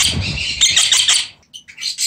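A parrot calling in a rapid run of short, harsh chattering notes, which breaks off about a second in; a shorter burst of the same calls comes near the end.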